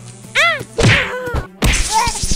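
Cartoon sound effects: a short swooping, warbling tone about half a second in, then a loud whack. From about a second and a half in, a loud sustained noise sounds as the cartoon ape is electrocuted.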